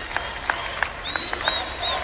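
Convention crowd applauding, with sharp, irregular individual claps close by. Three short high-pitched notes sound over the clapping in the second half.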